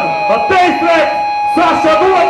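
A man shouting into a microphone through the PA of a live rock show, in short phrases, just after the band has stopped playing. Steady ringing tones from the stage sound are held underneath.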